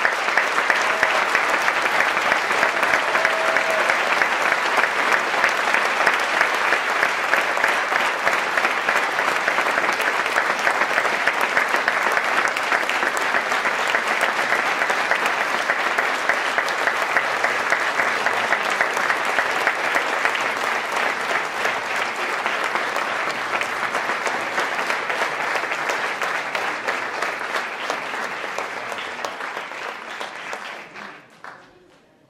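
Audience applauding: a long, steady round of clapping that eases slightly toward the end.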